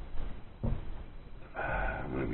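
A coffee mug set down on a table with a single short knock about half a second in, then a man's drawn-out hesitation sound, 'uh', near the end.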